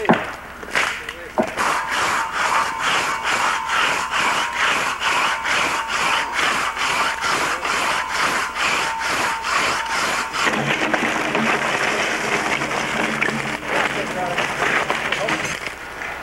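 Crosscut saw bucking a white pine log, its teeth rasping through the wood in a quick, even rhythm of strokes that stops about ten seconds in.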